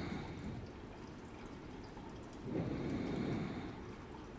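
Faint steady trickling of a small indoor tabletop water fountain, with a slow breath swelling and fading about two and a half seconds in.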